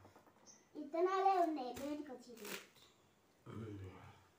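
A person's voice in a drawn-out, wavering call about a second in. Short rustling, crackling handling noises follow as hands pull apart sticky jackfruit flesh.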